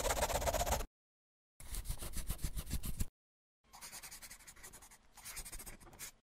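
Scratchy scribbling on paper, as used as a sound effect for a hand-drawn animation, in three strokes of a second or so each with short silent gaps; the last is softer.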